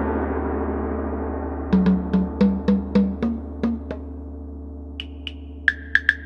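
Music over a scene change: a long ringing struck tone, gong-like, that starts suddenly and slowly fades, followed by a run of short struck notes at about four a second and, near the end, a few higher notes.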